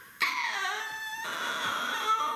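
A woman's high, wordless chanting voice, starting after a short pause and sliding down in pitch, as a storyteller acts out a fairy's singing.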